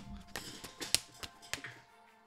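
Pokémon trading cards being set down and tapped onto a tabletop: a quick run of light taps and card slaps, the sharpest about a second in.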